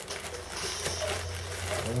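Clear plastic bubble-wrap bag rustling and crinkling as it is handled, under a steady low hum.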